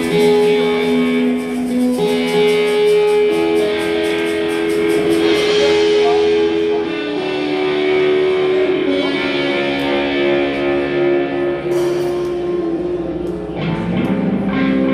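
Live electric guitar playing a slow line of long, held notes, backed by a drum kit: the cymbals tick steadily through the first few seconds, then give only sparse light hits until the drums and guitar come in harder near the end.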